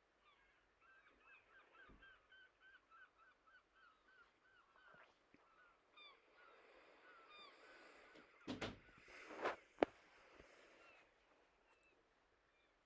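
Faint bird calls: a rapid series of short, repeated high notes, about four a second, thinning out after about five seconds. A few louder knocks and rustles come later, around nine to ten seconds in.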